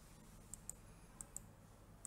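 Two computer mouse clicks, each a quick double tick of button press and release, about two-thirds of a second apart, over near silence.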